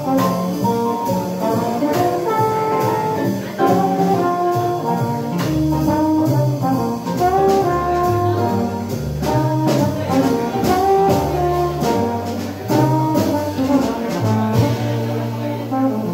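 Small live jazz band playing, with a trombone carrying the melody over piano, upright bass, archtop guitar and a drum kit keeping time on the cymbals.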